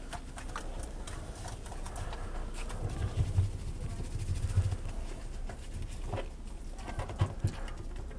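Hands scrubbing shampoo lather into a wet dog's legs in a bathtub. Scattered light clicks and knocks run through it, with a couple of low thumps in the middle.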